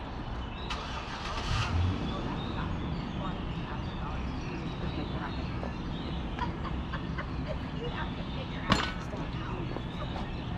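Steady wind and road rumble from a bicycle ride, picked up by a camera riding in the bike's basket, with a brief louder swell about a second and a half in and a single sharp click near the end.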